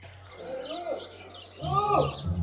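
A person calling out a drawn-out "Luh!", a fainter call about half a second in and a louder one near the end, each rising and falling in pitch.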